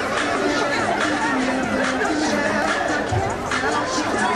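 Music for a group shuffle dance playing, with a crowd chattering and talking over it.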